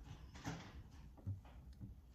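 Faint handling noise of hands pinching a small ball of clay open on a tabletop, with a few soft knocks and rubs.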